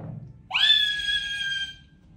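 A high-pitched scream that rises sharply about half a second in and is held for over a second, fading slightly before it stops.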